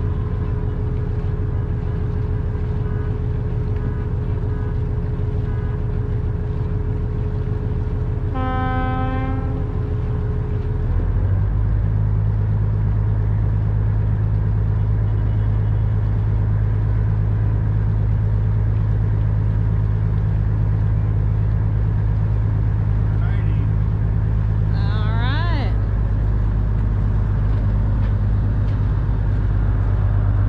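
Fishing boat's engine running steadily under way, heard on board, its note rising and getting louder about eleven seconds in. A horn sounds once for about a second, about nine seconds in.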